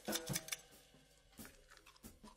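Knife tip clicking and scraping against the inside of a sea urchin's shell: a few small sharp ticks, spaced irregularly.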